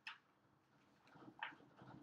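Faint squeak of a marker writing on a whiteboard: one sharp squeak at the start and another short squeak about a second and a half in.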